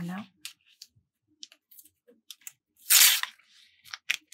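Gridded backing paper being peeled off self-adhesive Filmoplast embroidery stabilizer: a few light paper clicks, then one short tearing rip about three seconds in.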